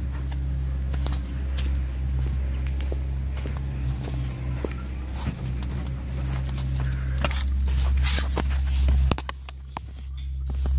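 Footsteps walking around a car, with scattered clicks and rustles from handling, over a steady low hum.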